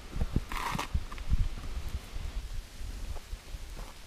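Hikers clambering up a boulder scramble: irregular scuffs and knocks of shoes and hands on rock, with handling bumps on the camera and a short hiss of scraping about half a second in.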